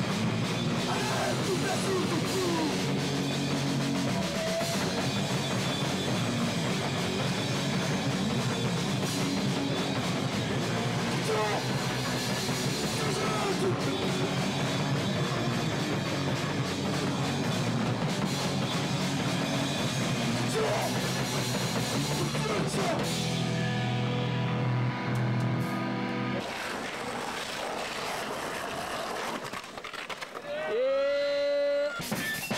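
Live punk band playing loudly through small amps: distorted guitar, bass and drum kit, with vocals over the top. The low end of the band drops out about 26 seconds in, and the sound turns thinner and quieter.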